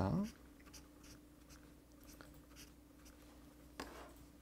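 Highlighter pen drawing circles on a textbook page: faint, scratchy strokes on paper over a low steady hum, with one sharper tick near the end.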